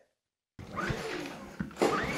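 Brief dead silence, then steady room hiss with a couple of soft low knocks, and a man's voice starting near the end.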